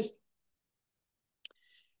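Near silence between words, broken once by a single short click about one and a half seconds in, followed by a faint, brief hiss.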